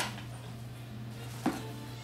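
Two knocks as a toddler handles a cardboard box and its contents, one at the start and a louder one about a second and a half in, over steady background music from a TV.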